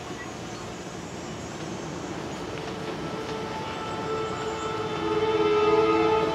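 The projected video's soundtrack, heard over loudspeakers in a large room: a steady hiss, then about halfway a sustained chord of held tones swells in, loudest near the end.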